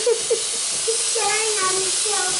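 Espresso machine steam wand hissing steadily while frothing milk in a metal jug, with a child's voice over it.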